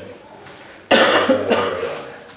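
A man coughing twice, sharp and loud, the first cough about a second in and the second half a second later, louder than the speech around it.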